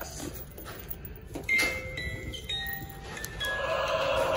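A short series of electronic chime tones, single held notes stepping between different pitches, starting about a second and a half in.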